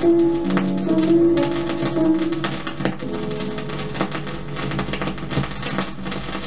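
Old acetate disc playing music on a turntable, with dense surface crackle and clicks from the groove running through it. The music drops in level about three seconds in.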